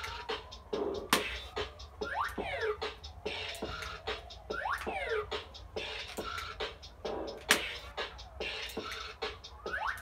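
Bop It! Refresh toy playing its Beat Bop game: an electronic beat with a quick run of clicks, and the toy's scratch-like sweep effects rising and falling every couple of seconds as moves are made in time to the music.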